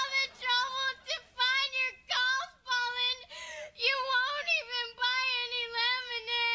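A young girl crying loudly in a string of long, high, wavering wails, broken by short gasping breaths.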